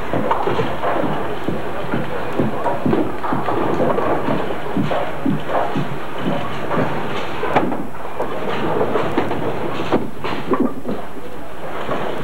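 Busy bowling alley din: a steady rumble of bowling balls rolling on wooden lanes, with scattered knocks and clatters of pins and a hubbub of voices.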